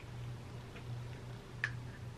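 Quiet room with a steady low hum and two or three faint, small clicks, the clearest about one and a half seconds in.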